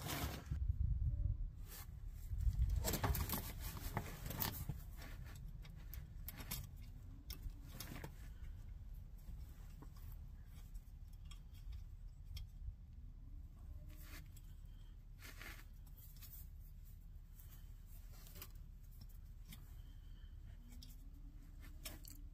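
Faint small metallic clicks and scrapes of a cotter pin being worked by hand through a castle nut and ball joint stud to lock the nut, with a louder stretch of rustling about three seconds in.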